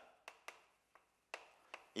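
Chalk tapping against a blackboard while writing: a few faint, short taps spread across two seconds.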